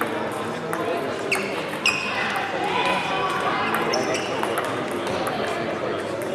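Table tennis balls clicking off tables and bats, over a background of people's voices, with a few short high squeaks.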